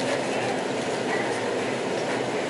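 Steady supermarket background noise: a continuous rumbling hum with faint voices mixed in.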